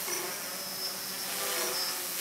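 Quadcopter's brushless motors and propellers buzzing steadily in a hover, pitch shifting slightly as the motors correct. The motors are driven by SimonK-flashed speed controllers.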